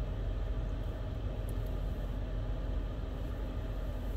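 Steady low rumble of an idling engine with a faint even hum, heard from inside a car's cabin.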